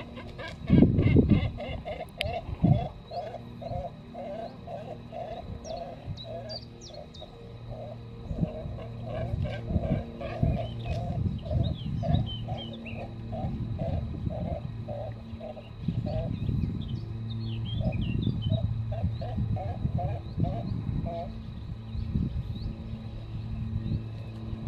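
Nesting great cormorants making guttural croaking calls, a long run of evenly repeated pulses at about two to three a second. A Cetti's warbler sings short bursts in the background.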